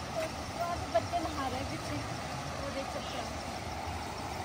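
Water rushing steadily over a small weir in a stone-lined channel, with faint voices in the background and one short click about a second in.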